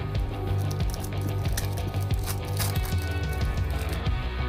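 Background music with the crinkling and tearing of a foil trading-card pack being ripped open. The crackle comes in quick bursts, thickest around the middle.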